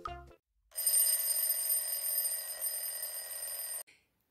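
An electric bell rings steadily for about three seconds, starting shortly after a children's keyboard tune ends, and stops abruptly.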